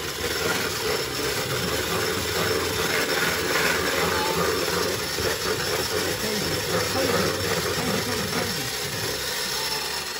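Electric hand mixer running steadily, its beaters whisking pancake batter in a plastic mixing bowl.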